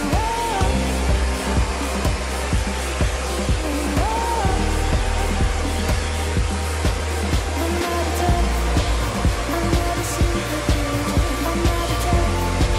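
Zepter Tuttoluxo vacuum cleaner's motor running steadily as its brush nozzle is drawn along a bookshelf, under pop music with a steady beat.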